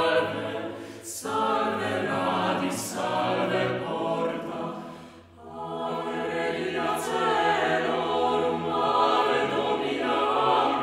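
Mixed-voice chamber choir of sopranos, altos, tenors and basses singing a cappella in sustained chords. The sound thins out briefly about five seconds in, at a break between phrases, then the voices come back in.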